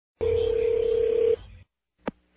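A telephone tone heard down a phone line as the call is placed: one steady tone lasting a little over a second, with line hiss and hum, then cutting off.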